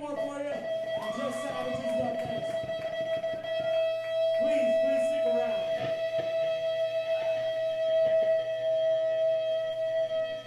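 Electric guitar through an amplifier holding one steady ringing note, with voices calling out over it.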